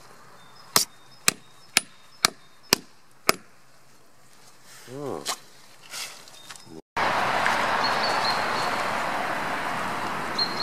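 A wooden plug being knocked into the sap tap hole of a birch trunk, sealing the hole at the end of the sap harvest: six sharp wooden knocks, about two a second. After a sudden cut, a steady outdoor hiss follows.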